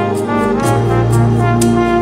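Live gospel band music between sung lines: a held brass-toned chord over deep bass, with a cymbal keeping a steady beat of about four strokes a second.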